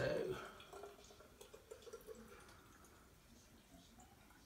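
Kombucha poured from a glass pitcher into a glass bottle: a faint trickle of liquid, strongest in the first couple of seconds.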